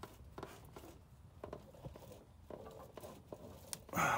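Faint scattered clicks and knocks of a wrench and a ratchet strap under strain as torque goes onto the stuck 19 mm bolt of the engine's bottom pulley. The bolt is not breaking free.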